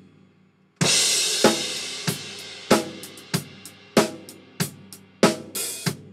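Live drum kit recording playing back through a room mic fed into the RedlightDist distortion plug-in, its top end opened up to 16 kHz. It starts about a second in with a crash cymbal and drum hit, then drum hits fall about every two-thirds of a second under ringing cymbals.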